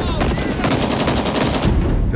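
Automatic gunfire: a long run of rapid, evenly spaced shots.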